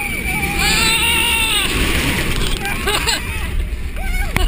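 Roller coaster riders screaming: one long scream over the first couple of seconds, then shorter yelps near the end, over a steady low rush of wind and the train running on the track.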